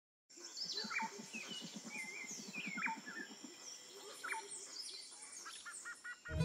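Several birds chirping and whistling, some calls gliding up and some down. Under them, in the first half, runs a low rapid pulsing trill of about nine pulses a second that stops about three and a half seconds in.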